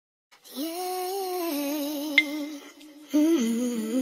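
A voice humming a slow melody in long held notes with a slight waver, stepping down in pitch, with a short break before the last note. A single sharp click with a brief ringing tone falls about two seconds in.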